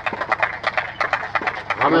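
Scattered applause from a small crowd: irregular handclaps, about ten a second, after a game is won.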